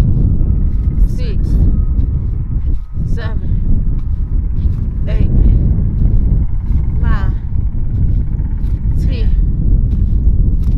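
Short strained vocal sounds from a person straining through partner leg throws, one about every two seconds, five in all, over a heavy wind rumble on the microphone.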